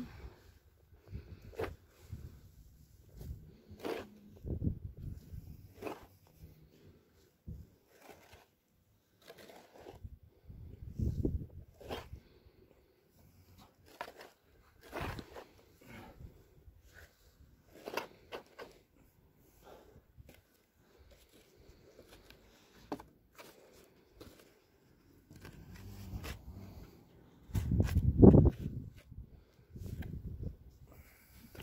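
A shovel scooping and tossing loose, clumpy soil to backfill a planting hole: scattered scrapes and crunches, with a louder run of thuds near the end.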